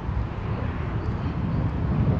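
A steady low outdoor rumble with no distinct event in it.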